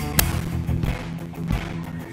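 Outro music with a steady beat, about one and a half beats a second, and a sharp hit just after it begins.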